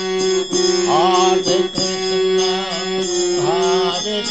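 Devotional kirtan music: a steady held drone under a voice singing long, gliding phrases twice, with a few sharp percussive strokes.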